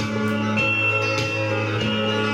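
Country-song backing track playing an instrumental stretch between sung lines, with guitar and sustained held notes.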